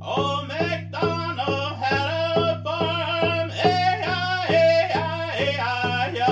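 A man singing with a wavering voice, in sung vocables rather than words, over a steady beat on a hand-held frame drum, about two to three strikes a second.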